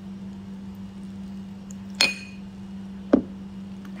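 Metal spoon clinking against a small glass bowl while scooping sauce: one bright, briefly ringing clink about halfway through, then a duller knock about a second later.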